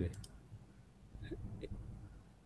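The end of a spoken word, then low room noise with two faint clicks a little over a second in.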